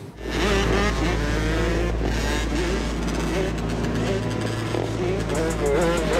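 Dirt-bike and quad engines running and revving in a city street, their pitch rising and falling over a steady low rumble, with voices in the background.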